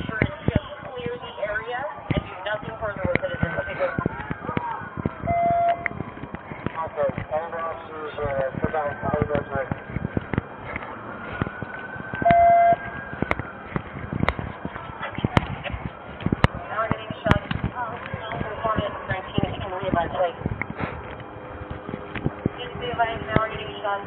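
Footsteps and gear knocking and rubbing against a police body camera as the officer moves, with a siren rising and falling in the background. Two short beeps sound about seven seconds apart.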